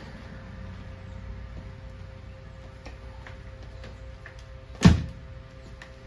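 A Bissell CrossWave wet-dry floor cleaner gives one loud, sharp click about five seconds in as it is tilted back from its upright position to be used. A steady low hum runs underneath.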